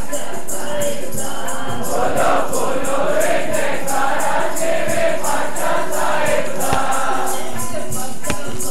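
A group of people singing a devotional song together, over a steady percussive beat of about three strokes a second.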